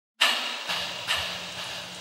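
Intro sound effect: a sudden loud burst of hiss that starts abruptly, with two sharper hits about half a second apart and a low steady hum underneath.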